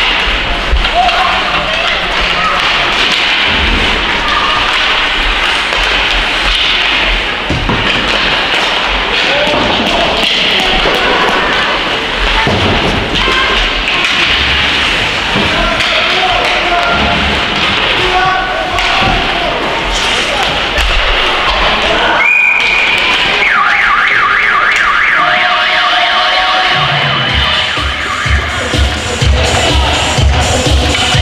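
Indoor ice-rink game noise: crowd voices and play sounds echoing in the arena. After a sudden cut about two-thirds of the way in, an electronic warbling horn sounds over the arena PA, followed by dance music with a heavy beat, as played after a goal.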